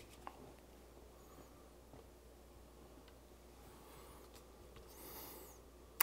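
Near silence: room tone with faint handling noise from the guitar being turned over, a small tick a moment in and a soft rustle about five seconds in.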